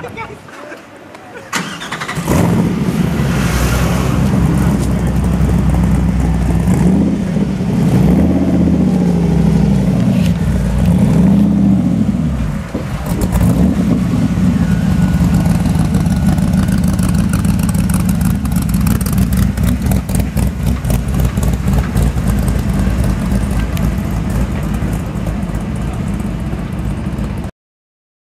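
Rapier Superlite SLC's engine firing up about two seconds in, loud and low, with several rising and falling revs, then running steadily as the car moves off. The sound cuts off suddenly near the end.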